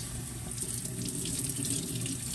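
Kitchen tap running steadily, its water splashing over a boneless beef chuck roast as it is washed under it.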